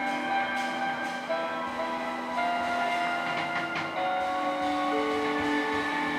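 A live band of electric guitar, upright double bass, piano and drum kit playing an instrumental passage, with long held melody notes moving step by step and light cymbal strokes.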